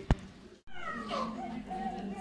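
A sharp click, then, after a brief cut-out, an infant's short, thin cries that fall in pitch.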